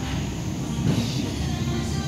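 Steady low rumble of gym room noise, with a faint knock about a second in.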